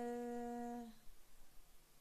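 A woman's drawn-out hesitation sound, a Polish filler "yyy", held on one steady pitch for about a second and then breaking off into a pause of faint room tone.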